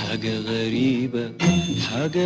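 Music from an Egyptian film song: a melody with wavering pitch over sustained accompaniment, with a short dip and a fresh attack about one and a half seconds in.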